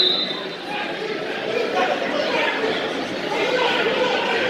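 Indistinct chatter and calls from spectators and coaches in a gymnasium, with a short, high referee's whistle blast right at the start.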